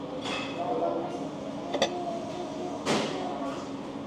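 Diner room sound: other people's voices in the background over a steady low hum, with a sharp clink of tableware a little under two seconds in and a brief clatter about three seconds in.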